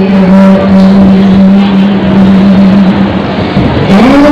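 Amplified female voice singing through a microphone and PA, holding one long low note that sags slightly in pitch, then stepping up to a higher note near the end.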